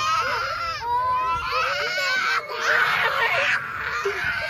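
A young girl crying hard: a run of long, high-pitched wails one after another, turning rougher and more strained in the second half.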